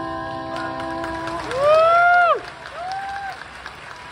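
The last chord of keyboard and acoustic guitar rings on and fades, then a voice gives a loud whooping cheer that rises and falls, the loudest sound here, followed by a shorter second whoop. Applause starts in the second half as the song ends.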